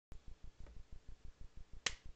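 A single sharp computer mouse click near the end, over a faint, even low thumping of about six beats a second.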